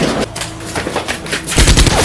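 Gunfire in rapid bursts, growing much louder and denser about one and a half seconds in.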